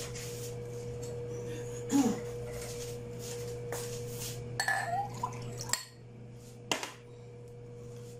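Kitchenware knocking and clinking on a countertop now and then, loudest about two seconds in, over a steady low hum.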